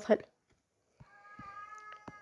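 The last syllable of a woman's speech, then a short silence. About a second in, a faint steady pitched tone with several overtones starts and holds flat for about a second and a half, with a few light clicks.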